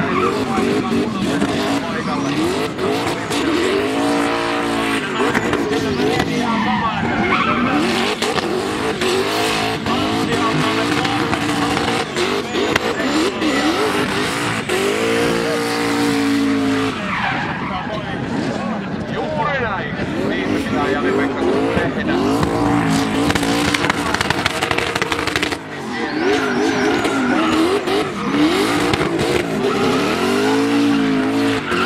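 Turbocharged V8 in a BMW E91 touring revving hard during a burnout, the revs swinging up and down again and again while the rear tyres spin and squeal.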